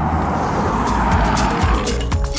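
A car passing close by: engine hum under a wash of tyre noise that swells and fades. Music comes in near the end.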